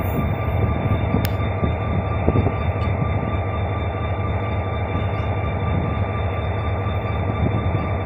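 Korail diesel locomotive's engine running with a steady low rumble as it slowly pulls a Saemaeul passenger train out of the station, a steady high whine sounding over it. A single brief click about a second in.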